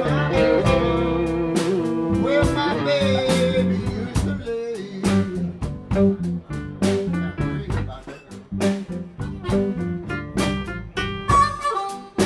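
Live blues band playing a slow blues: electric guitars, electric bass and drum kit, with a short sung "oh" midway. A drum beat comes forward after a few seconds, and a harmonica holds a long note near the end.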